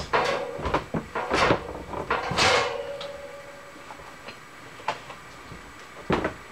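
Steel machine-shop parts handled on the bench: about four sharp knocks and clinks in the first three seconds, the last one followed by a short metallic ring, then a couple of faint ticks.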